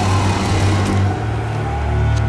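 A rushing whoosh of a freezing-breath sound effect, fading after about a second, over a low sustained orchestral drone.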